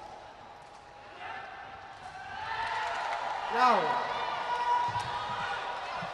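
Indoor sports-hall crowd noise building up, with a short voice call in the middle. Near the end comes a single sharp knock of the sepak takraw ball being kicked for the serve.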